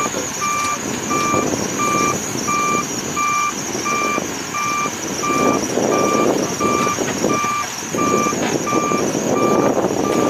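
Forklift's backup alarm beeping at an even pace, about three beeps every two seconds, over its engine running, which grows louder in the second half.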